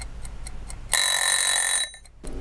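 A few light ticks, then a lemon-shaped mechanical kitchen timer's bell rings for about a second and stops suddenly: the set time has run out.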